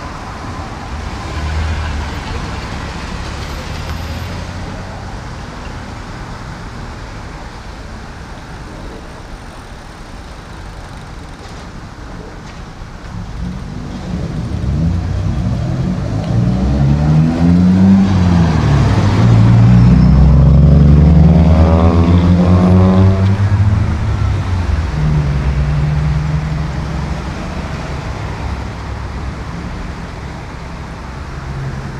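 Steady road traffic, with one vehicle's engine growing loud about halfway through, its pitch rising and falling as it passes, then fading back into the traffic.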